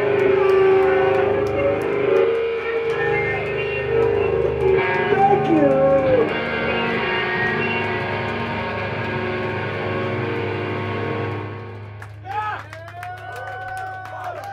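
Live band's amplified electric guitar ringing out in held notes at the end of a song, with a few sliding pitches in the middle. About twelve seconds in it drops away, leaving a steady amplifier hum under voices from the room.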